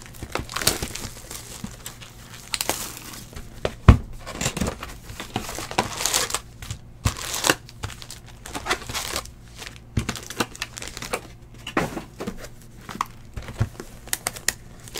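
Foil wrappers of 2018 Donruss Football trading-card packs crinkling in irregular crackles as the packs are handled and stacked by hand, with a sharp knock about four seconds in.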